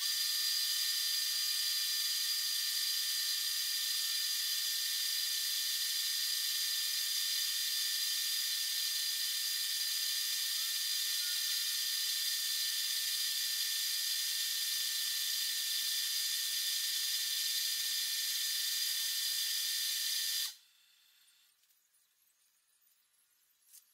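A loud, steady hiss with a few faint high whistling tones in it, cutting off suddenly near the end.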